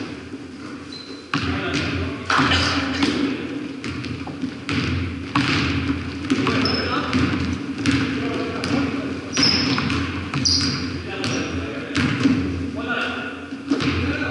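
A basketball bouncing on a hardwood gym floor during play, each bounce echoing through the big hall, with brief high sneaker squeaks now and then and players' shouts mixed in.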